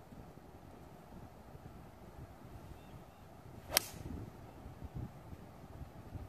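A golf iron striking the ball off the tee: one sharp, brief click a little past halfway.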